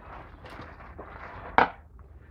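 Light handling noise, then one sharp wooden knock about one and a half seconds in as a cut branch stump is set down on an MDF base board.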